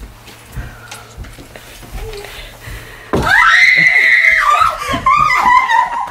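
A woman's long, high-pitched scream of surprise breaking out suddenly about three seconds in, after a quiet stretch, running into excited shrieking voices.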